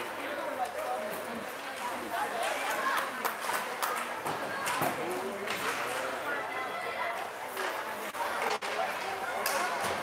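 Faint spectator chatter echoing in an indoor ice rink, with scattered sharp knocks from the play on the ice.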